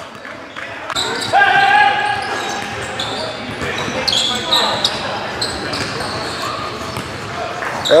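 Game sounds from a pickup basketball game on a hardwood gym floor: a ball dribbling and players' voices calling out, echoing in the large hall.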